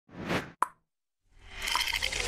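Logo-intro sound effects: a short whoosh, then a sharp pop just over half a second in. After a pause, a fuller sound swells up near the end.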